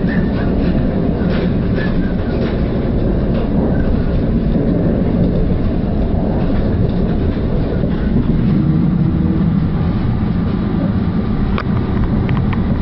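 Northern Class 333 electric multiple unit heard from inside the carriage, running at speed: a steady low rumble of wheels on rail, with a sharp click near the end.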